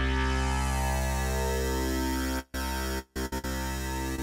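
Bass sound holding one low note through a sidechained noise gate (Ableton Live's Gate, keyed from the muted drums). About two and a half seconds in it starts cutting out in short gaps as the gate closes between drum hits.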